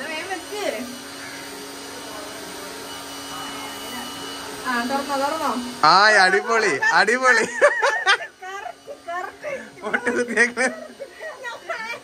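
A steady low buzz lasting a few seconds, then people talking loudly in quick bursts for the rest of the stretch.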